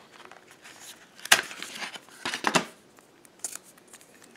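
Cardboard and plastic packaging handled as a smartphone is pushed out of its paperboard tray: a few short scraping rustles, the loudest about a second in and another about two and a half seconds in.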